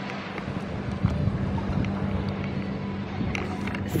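A steady low mechanical hum under a hiss of wind and water noise.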